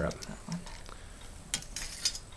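Brass fittings of a leather sword scabbard clinking quietly as the clasp is flipped open, then a short metallic scrape about a second and a half in as the blade starts to slide out through the scabbard's brass throat.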